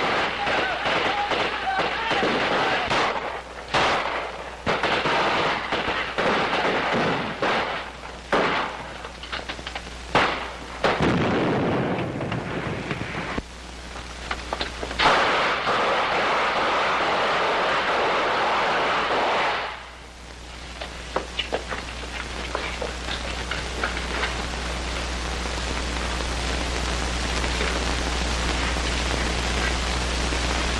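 Battle sound effects from an old film soundtrack: a rapid run of gunshots over the first ten seconds or so, then a long rumbling explosion from about eleven to twenty seconds in. After that come a steady hiss and hum with a few scattered shots.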